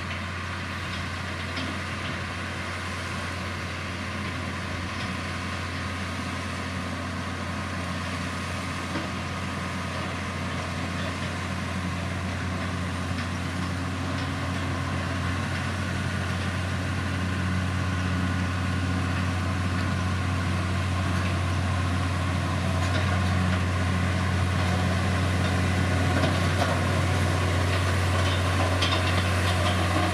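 LiuGong motor grader's diesel engine running steadily as the grader pushes soil and gravel with its blade, with a deep, even hum. It grows gradually louder as the machine comes closer.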